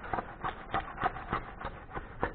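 An old, hardened decal being scraped and peeled off a plastic ATV body panel with a spatula and a gloved hand: a run of short, irregular scrapes and clicks.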